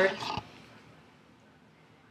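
A woman's voice trailing off on a drawn-out word about half a second in, then quiet room tone.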